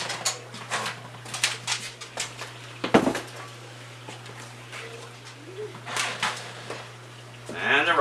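Cookware clattering at the stove: scattered clinks and knocks of a pan and utensils, with one loud clunk about three seconds in as the cast-iron skillet is set down on the counter.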